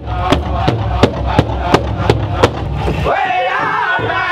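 Powwow drum group beating a large shared drum in unison, a steady beat of about three strokes a second, with high-pitched singing joining in about three seconds in.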